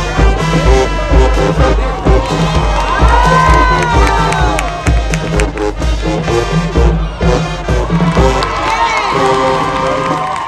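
High school marching band playing, with brass horns over a steady, regular bass-drum beat, while the crowd in the stands cheers and shouts.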